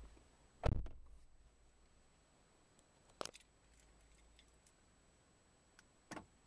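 Quiet handling noises: a soft thump less than a second in and a short click about three seconds in, with near silence between. The engine is not running.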